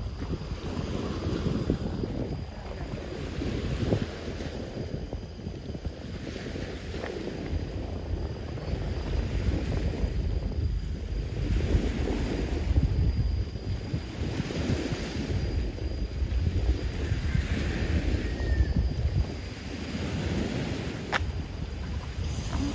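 Wind buffeting the microphone in gusts, a heavy low rumble, with small waves washing against the rocky seawall, their hiss swelling and fading every few seconds.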